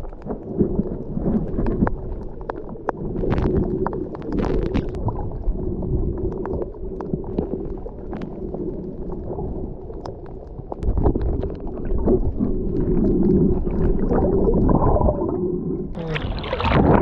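Muffled underwater sound picked up by a GoPro action camera held below the surface: a low rumbling wash of moving water with scattered short clicks and crackles.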